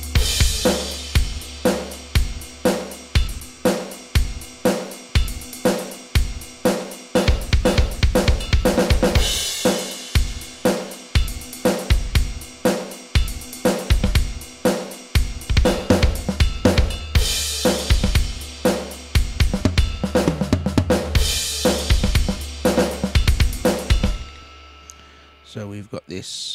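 Rock drum pattern from the Rock Drum Machine 2 iPad app at 120 BPM, set to a dead basic beat: kick, snare and hi-hat in a steady groove with a few cymbal crashes. The beat stops near the end.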